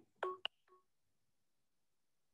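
Short electronic telephone beeps over a conference-call line, each a steady pair of tones: two in quick succession in the first half second and a faint third just after, then near silence. They come as the dial-in caller's phone connection drops.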